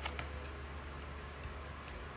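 Faint clicks and taps of tarot cards being handled and laid down on a wooden table, a couple near the start and a couple near the end, over a steady low hum.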